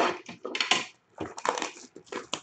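Plastic shrink-wrap crinkling and tearing in quick irregular crackles as a sealed trading-card box is unwrapped by hand.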